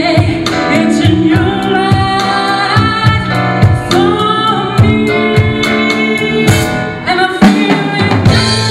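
A woman singing lead with a live blues band, the drum kit keeping a steady beat under her voice.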